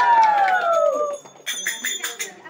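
Conch shell (shankh) blown in one long loud note that rises, arches and then slides down in pitch, dying away about a second in. Near the end, rapid metallic ringing.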